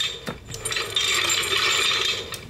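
Rapid run of small ratcheting clicks from a toy Infinity Gauntlet's finger joints as the fingers are worked.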